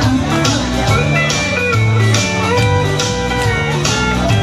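Instrumental break in a country dance song: band music with guitar and a steady beat of about two a second, with a fiddle melody carried over it.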